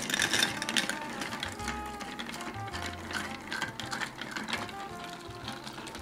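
Bar spoon stirring ice in a glass mixing glass: a dense, continuous run of small ice clinks and rattles as the drink is stirred to chill and dilute it. Soft background music with a bass line plays underneath.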